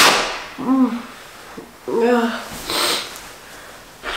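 A woman sneezing: a sudden loud burst at the start, then short voiced sounds and another breathy burst about three seconds in.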